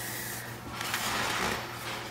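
Hands sliding over and shifting a sheet of 12x12 scrapbook paper: a soft paper rustle that swells about a second in and fades near the end.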